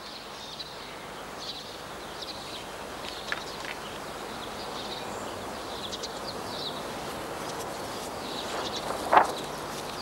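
Outdoor garden ambience: a steady background hiss with scattered faint chirps of small birds, and one short, louder sound about nine seconds in.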